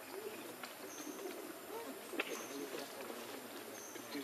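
Forest ambience with a dove cooing low and repeatedly, a short high chirp recurring about every second and a half, and a single sharp click a little after two seconds in.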